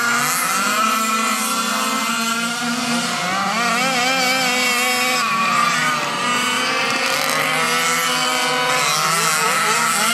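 Several 1/5-scale RC sprint cars' small two-stroke gas engines buzzing together as they race, with overlapping pitches that keep rising and falling as the cars rev up and back off.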